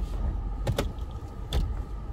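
Low steady rumble of a car heard from inside its cabin, with a few short knocks or rustles: two close together under a second in, and one more past the middle.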